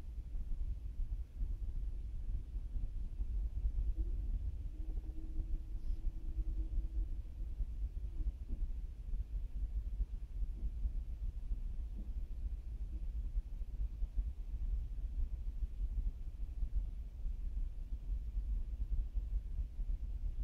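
Steady low background rumble with no distinct events, and a faint brief hum about five seconds in.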